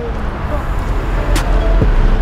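Street sound: a car driving past with a deep rumble on the camera microphone, and a sharp click about one and a half seconds in. Music starts to come in near the end.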